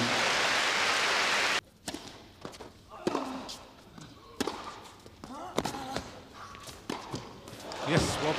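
Crowd applause that cuts off abruptly after about a second and a half, followed by a tennis rally on an indoor court. Rackets strike the ball about every second and a quarter.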